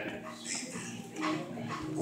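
Faint murmuring voices of a praying congregation, with short vocal sounds about half a second and a second and a quarter in.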